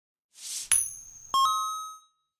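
Animated logo intro sound effect: a short whoosh, then a bright metallic ding and, about half a second later, a second, lower chime, both ringing out and fading away.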